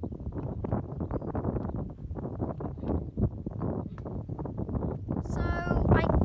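Wind buffeting the microphone in irregular gusts, a low rumble. Near the end a short high-pitched cry is heard.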